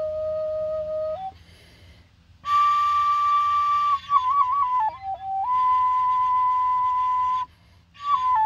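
Traditional Kalinga bamboo flute playing slow, long held notes: a low held note, a short break for breath, then a high note that steps down through a few short notes and settles on a long held note before another pause near the end.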